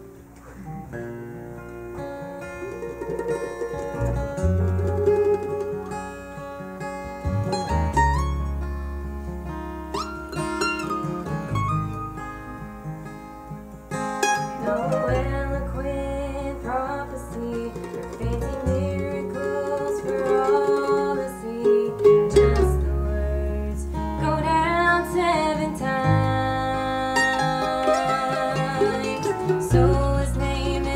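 Live acoustic string-band music: acoustic guitars and a mandolin playing a song together, with deep bass notes underneath.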